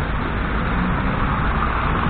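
Steady city street traffic noise: cars passing through an intersection, a continuous low rumble with road hiss.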